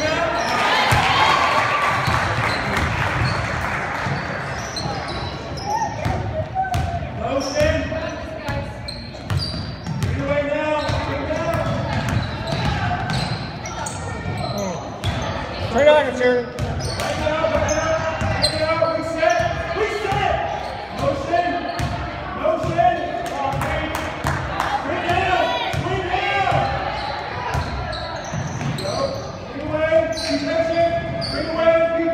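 Basketball game in an echoing gym: players' and spectators' voices calling out across the court, with a basketball bouncing on the hardwood floor.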